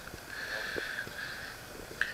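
Faint sound of water being squeezed from a plastic squeeze bottle's nozzle onto a pile of superabsorbent powder, a low steady hiss with a few soft ticks.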